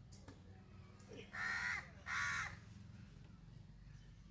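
A crow cawing twice in quick succession, two loud calls about 1.5 and 2 seconds in.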